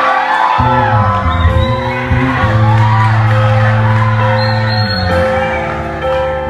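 Live band playing, with electric guitar, keyboard and drums, and voices rising over the music.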